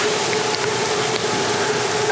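Steady background noise in a pause of speech: an even hiss with a constant faint hum running under it.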